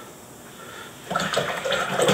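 Watercolour brush being swished in a jar of rinse water, a watery sloshing that starts about a second in.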